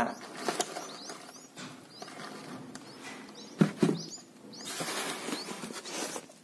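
Red-whiskered bulbul nestlings in a nest giving faint, high, short chirps over and over. Two sharp knocks come a little past halfway, and a rustle of handling follows near the end.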